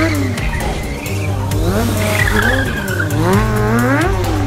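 Kawasaki 636 sport bike's inline-four engine revved hard up and down again and again, with tyre squeal as the rear tyre slides in a drift.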